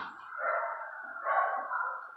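Dogs barking in two short, muffled bursts.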